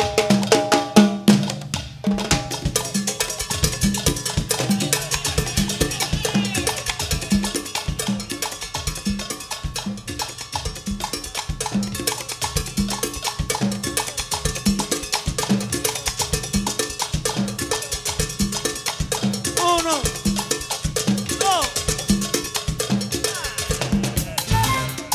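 Live Cuban timba band in a percussion-led groove: drum kit, cowbell and hand drums, with a low drum stroke repeating steadily about every two-thirds of a second.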